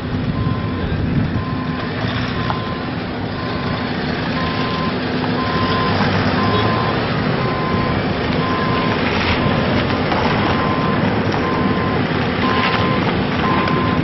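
Vehicles driving out one after another, with engine and road noise throughout. Over them a reversing alarm beeps steadily, about once a second.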